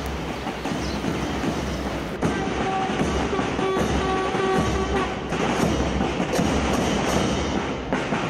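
Train running with a rumbling clatter from the wheels. A held tone sounds from about two seconds in to about five, and a few sharp clacks come near the end.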